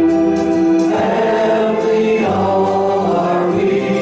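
A congregation singing a peace song unaccompanied, a cappella, with held notes that change pitch every second or so.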